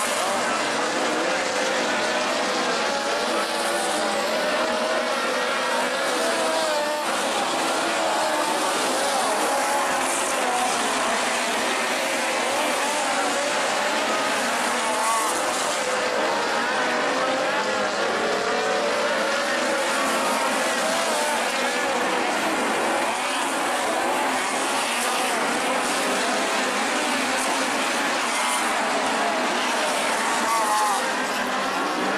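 Pack of dirt-track midget race cars with four-cylinder engines running laps, several engine notes rising and falling in pitch as they rev and pass, loud and unbroken throughout.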